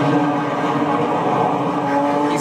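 Crime-drama soundtrack: a steady, sustained drone that holds one pitch.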